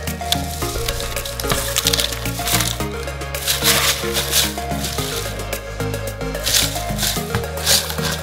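Background music with a steady bass line, over the rustling of crinkle-cut paper shred being dropped into a corrugated cardboard mailer box, with a few louder rustles.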